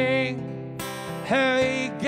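A man singing long, wavering held notes over a strummed steel-string acoustic guitar. A little past halfway he slides up into a new sustained note.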